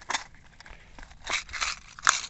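A clear plastic hook box being opened by hand: a click near the start, then a short cluster of plastic clicks and crackles about a second and a half in as the lid comes open.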